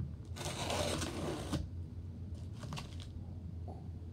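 A knife blade slicing through packing tape on a cardboard box: one drawn-out rasping cut lasting about a second, followed a second later by a few short scrapes and light taps of the blade on the box.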